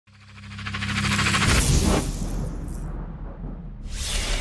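Sound-design effects for an animated logo intro. A deep rumble with a fast rattling texture swells up from silence to a hit about a second and a half in, then dies away. Another whoosh starts just before the end.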